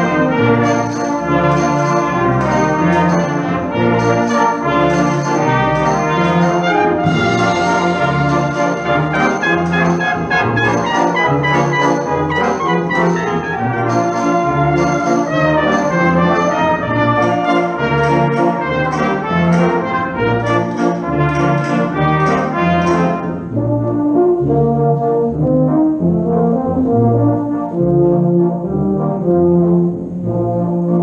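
Brass band playing, cornets and trombones with lower brass together, with a regular beat. Just over three quarters of the way through, the high parts drop away and the lower brass carry on.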